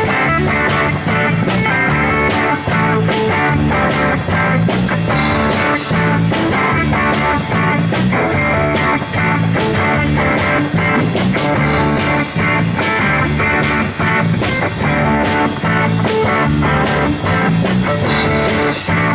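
Live rock band playing an instrumental passage: electric and acoustic guitars, bass guitar and drum kit over a steady beat. The mix is rough, with no sound engineer at the desk.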